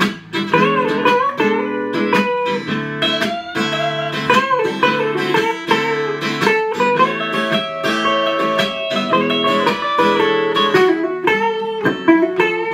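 Two guitars playing an instrumental blues break: a sunburst archtop electric guitar plays single-note lead lines with bent notes over a second guitar's rhythm accompaniment.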